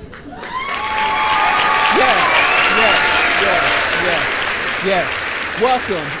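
Applause with cheering, swelling up over the first second and staying loud. Near the end a man's voice starts over it.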